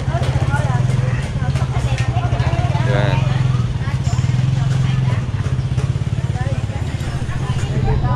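Motorbike engine idling close by, a steady low pulsing hum, with people talking in the background.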